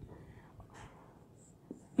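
Faint strokes of a felt-tip marker on a whiteboard as a single letter is written.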